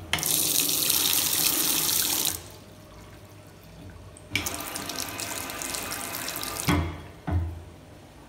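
Push-button tap on a ceramic washbasin pressed twice: each time water runs into the basin for about two seconds and then stops abruptly. The second run ends with a thump, followed by another thump about half a second later.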